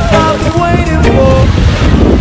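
Wind buffeting the microphone in a loud, constant low rumble, over the wash of small waves breaking on a sandy shore.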